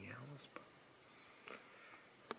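Near silence: a man's low voice trails off in the first moment, then only faint room hiss with one small click about one and a half seconds in.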